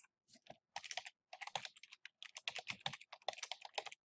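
Typing on a computer keyboard: a quick, uneven run of key presses that starts about a third of a second in and goes on for some three and a half seconds.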